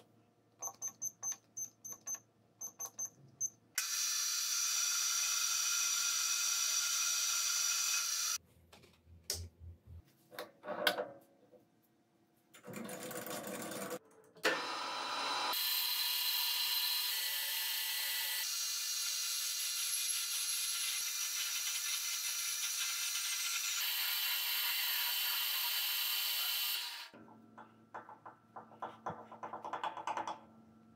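Metal lathe turning a steel shaft: two long spells of steady machining sound, one a few seconds in and a longer one through most of the second half, with clicks and knocks of handling between and after. It opens with a run of short beeps as keys are pressed on the lathe's digital readout.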